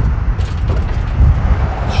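Lawn tractor engine running, a loud, low, uneven rumble.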